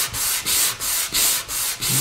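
A sanding block rubbed by hand back and forth over a stained quilted maple guitar top, in even strokes about three a second. The sanding cuts the dark stain back off the wood to bring out the light and dark contrast of the quilted figure.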